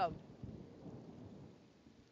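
Low rumble of distant thunder that fades away over about a second and a half.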